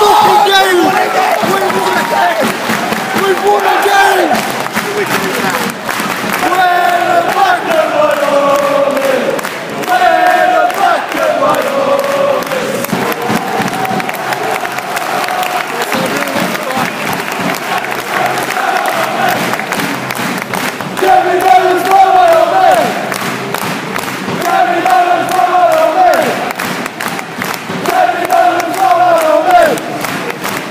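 A football crowd singing chants together in unison, loud and continuous, with sung phrases rising and falling.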